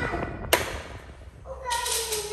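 Vintage National F-30A1G desk fan running quietly and smoothly, with a single sharp click about half a second in.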